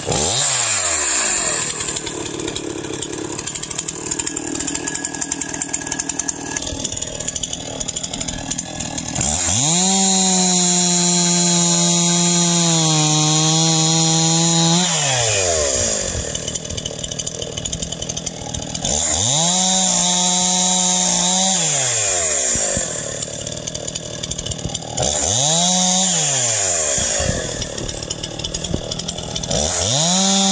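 Stihl MS311 59cc two-stroke chainsaw idling and revving up to full throttle to cut through small logs, then dropping back to idle each time the throttle is released. There is one long cut of about five seconds whose pitch dips slightly partway through as the chain loads in the wood, then two shorter cuts, and a fourth rev-up starting near the end.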